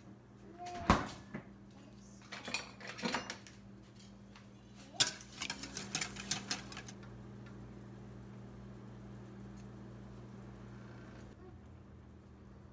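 A utensil clinking against a stainless steel mixing bowl as eggs and cream are beaten, in a single knock, then short clusters of clicks, then a fast rattling run lasting about two seconds. A faint steady hiss follows.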